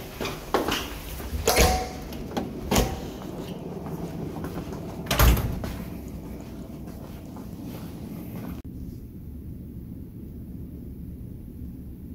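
A door being opened and shut, with several sharp clunks and knocks in the first six seconds amid walking and handling noise. After that comes a low, steady room hum.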